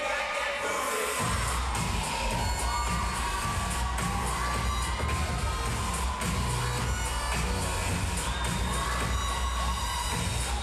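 Hip-hop dance music playing over an arena's sound system while the audience cheers and shouts. The bass cuts out for about the first second, then the beat comes back in.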